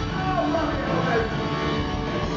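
Live rock band playing, with the singer's voice sliding up and down between notes over held chords from the band.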